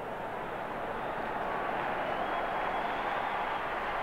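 Stadium crowd noise heard through an old TV broadcast: a steady wash of many voices that swells a little in the middle, the crowd reacting with relief as the injured quarterback gets back to his feet after a sack.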